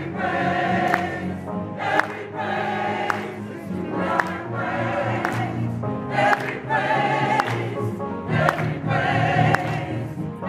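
A mixed amateur choir singing a lively song, with the singers clapping their hands in time, about one clap a second.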